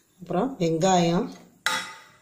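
A voice speaks briefly, then a steel bowl knocks once against the rim of a stainless steel pot as chopped onion is tipped in, a sharp metallic clink that rings on and fades.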